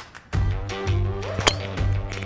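Background music with a steady bass starts about a third of a second in. About halfway through it is cut by a single sharp crack of a three wood striking a golf ball off the tee.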